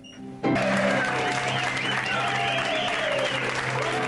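Nightclub stage music with a woman singing, and an audience clapping and cheering that breaks in suddenly about half a second in and carries on.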